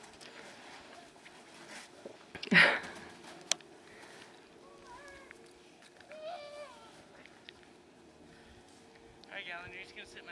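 A small child's voice calling out in short, high, wavering sounds from a little way off, with a brief loud rushing noise about two and a half seconds in and an adult starting to speak near the end.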